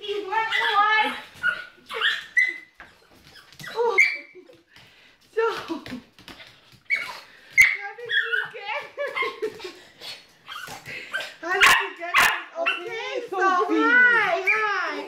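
Small dog giving high-pitched, wavering whining cries over and over, with a few sharp knocks around the middle and near the end.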